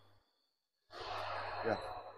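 About a second in, a man lets out a breathy sigh that runs into a short spoken "yeah", with a faint steady high tone behind it.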